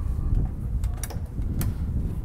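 Footsteps on a metal boarding ladder with teak treads: two short, sharp knocks about one and one and a half seconds in, over a steady low rumble.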